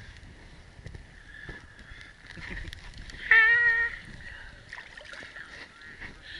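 Water lapping and sloshing close against a phone held at the surface of a geothermal lagoon. A little over three seconds in, a brief high-pitched wavering call, about half a second long, is the loudest sound.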